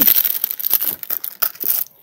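Packaging crinkling and rustling as items are handled and unwrapped, a dense run of crackles that stops just before the end.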